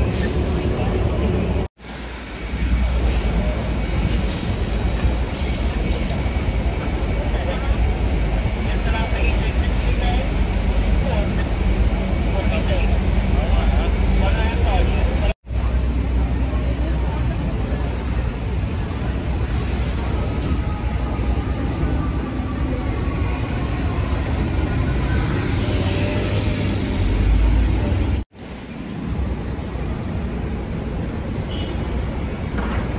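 City street ambience: a steady traffic rumble with indistinct voices of people nearby. It breaks off abruptly three times as the shots are cut together.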